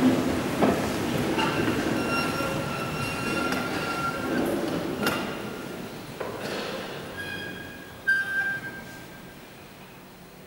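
Shuffling, knocks and creaking from people and wooden pews in a large, echoing stone church, with long high squeaks. A sharp knock with a squeak comes about eight seconds in, then it dies away.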